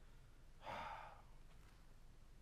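A man's sigh: one short breathy exhale about half a second long, near the middle of an otherwise near-silent stretch.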